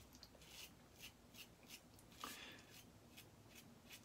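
Faint, quick strokes of a Karve aluminium safety razor scraping stubble through shaving lather, about three short scratchy strokes a second.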